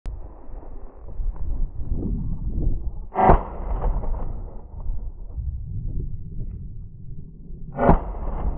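A loud shotgun shot about three seconds in, and a second similar report just before the end, over the low rumble of strong wind buffeting the microphone.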